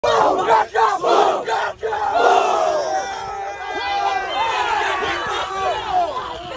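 A football team shouting together as they break the huddle: loud group shouts broken by two brief pauses in the first two seconds, then many voices yelling and whooping over one another.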